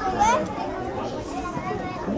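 Children's voices: overlapping chatter and calls of children playing, with one short rising call about a quarter second in.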